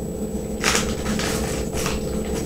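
Croutons poured from a plastic snack bag into a plastic bowl, with the bag rustling: two short bursts, about half a second in and near the end.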